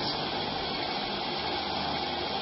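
Steady, even background hiss with no change through the pause.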